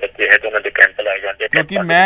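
Speech only: a man talking over a telephone line, his voice thin and cut off at the top, with a second man's fuller, clearer voice coming in near the end.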